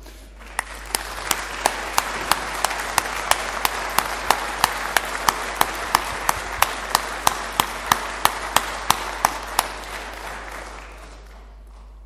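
Audience applause in a hall, swelling right away and dying down near the end, with one set of claps standing out loud and regular at about three a second through most of it.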